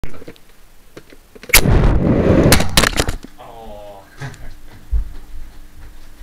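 Nerf Titan foam rocket fired about a second and a half in: a sudden blast of the air launch, then air rushing past the rocket-borne microphone for about a second and a half. The flight ends in several sharp knocks as the rocket strikes and lands.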